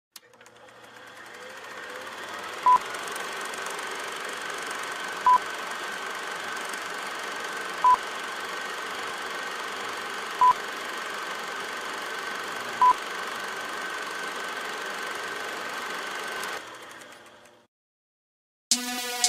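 Electronic intro sound of a steady static hiss with a thin high tone held through it, fading in over the first few seconds. Five short, loud beeps about two and a half seconds apart stand out over it, and the whole fades out near the end.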